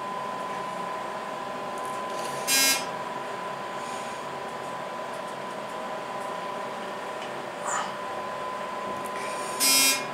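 Floor-passing buzzer of a descending hydraulic glass elevator car sounding twice, each a short buzz, about seven seconds apart, with a steady thin high tone running under the ride.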